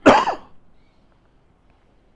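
A man clearing his throat once: a single short, loud, cough-like burst right at the start.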